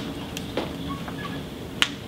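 A single sharp click near the end, with a couple of fainter ticks before it, over the steady hum of a meeting room.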